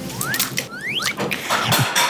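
Crackling of crisp deep-fried glass noodles as they are lifted and broken with tongs and chopsticks. Three short rising whistle-like tones are heard, one near the start and two about a second in.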